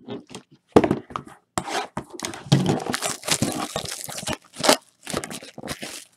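Packaging being torn open and crinkled as sealed trading-card boxes are unwrapped: a sharp rip just under a second in, a dense run of tearing and crinkling through the middle, and another rip near the end.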